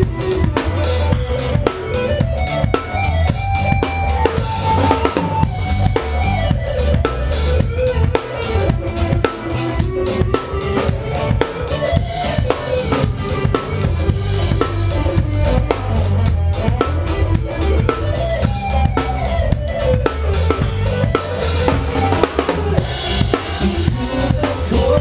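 Live ska band playing, heard from beside the drum kit: the drums are loudest, with bass and a melody line over them.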